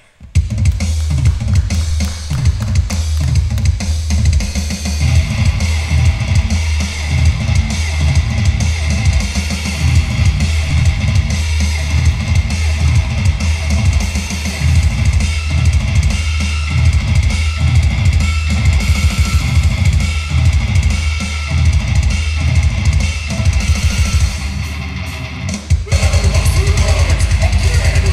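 Live hardcore band starting a song, drum kit loud and to the fore. The song starts about half a second in, and near the end the drumming changes to a fast, even beat.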